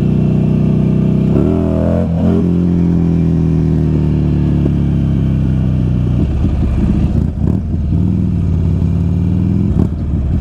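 2005 Buell XB9R Firebolt's air-cooled V-twin engine running under way. Its pitch shifts about two seconds in, then holds steady, and from about six seconds in the sound turns uneven, rising and falling once more near the end.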